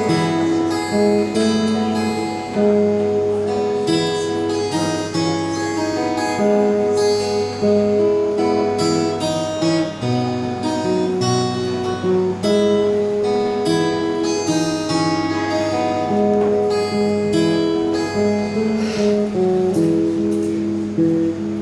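Solo acoustic guitar playing an instrumental break: a steady pattern of picked notes and strums, with no voice.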